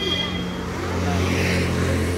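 Street traffic: a motor vehicle's engine running on the road close by, a steady low hum with road noise that grows a little louder in the second half.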